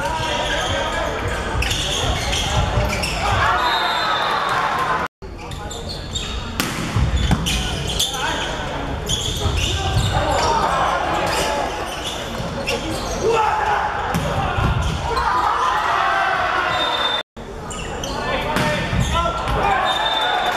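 Men's indoor volleyball rallies in a large sports hall: the ball struck repeatedly with sharp slaps and thuds on serves, digs and spikes, amid players' shouts, all echoing in the hall. The sound cuts out twice, briefly.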